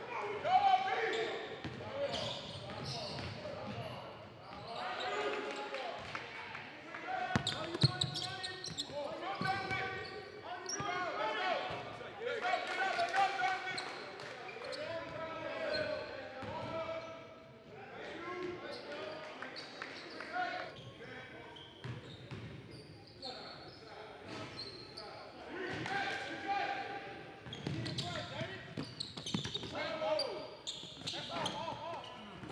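A basketball bouncing on a hardwood gym court during play, with indistinct shouts and calls from players and coaches, echoing in a large hall.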